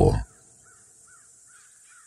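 Faint crows cawing, a run of short calls one after another, in a pause in the narration.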